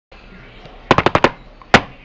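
A rapid run of five sharp clicks or knocks, then a single click about half a second later.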